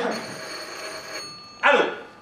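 Telephone ringing once for about a second, a steady high bell tone. A short loud burst follows near the end.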